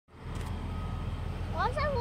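Steady low rumble of a large truck's engine running. A child's high voice comes in near the end.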